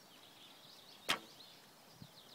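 A bow shot: the bowstring is released with a single sharp snap about a second in, followed by a brief ring from the bow.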